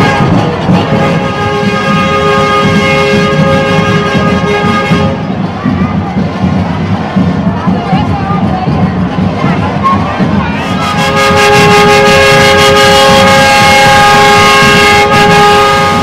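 Conga street-band music with steady drumming and percussion. A loud held horn chord sounds twice, for about four seconds each time, the second time louder. Crowd voices run underneath.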